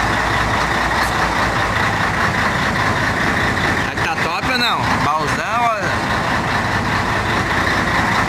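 Heavy diesel truck engine idling steadily, with voices talking in the background from about four to six seconds in.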